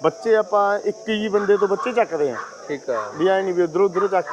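Men talking in conversation, over a steady, high-pitched insect chirring behind the voices.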